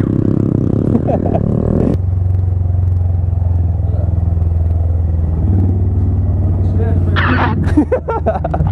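Honda Grom motorcycle's 125 cc single-cylinder engine running at low speed, settling into a steady idle about two seconds in.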